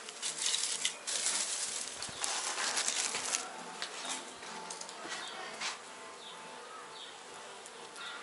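Dry hay rustling and crackling as a handful is pulled from a pile and carried by hand, busiest for the first few seconds and then dying down to faint rustles.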